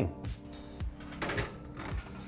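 A few light metal clicks and clatters as a sheet pan holding a wire rack is slid onto an oven rack, over steady background music.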